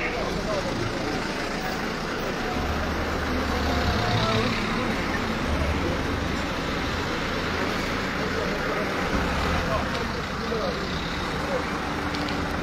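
Street traffic noise: road vehicles running past, a low rumble that swells a few seconds in and again in the middle, over indistinct background voices.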